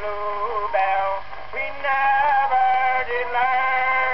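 A 1908 Edison four-minute wax cylinder playing on a phonograph: a comic song with its held sung or accompanying notes. It has the thin, narrow sound of an early acoustic recording.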